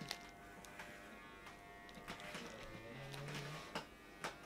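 Electric hair clippers buzzing faintly and steadily during a buzz cut, with a few light crinkles and taps as a bubble-wrapped camera lens is handled and set down on a wooden table.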